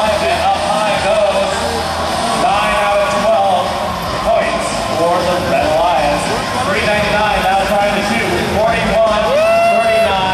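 A match announcer's voice over an arena public-address system, echoing in the hall, over a steady din of arena noise.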